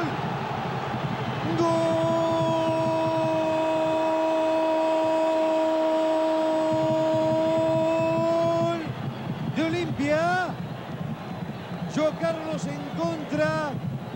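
A sports commentator's goal call: a long, drawn-out "goool" shouted at one steady pitch for about seven seconds. Shorter excited shouts follow near the end, all over the steady noise of a stadium crowd.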